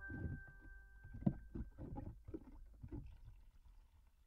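A metal spoon stirring soda into water in a plastic tub, the water sloshing with about three strokes a second and dying down near the end.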